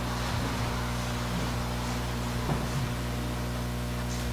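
Steady electrical hum and hiss from a church sound system, with a few faint bumps as a microphone stand is moved.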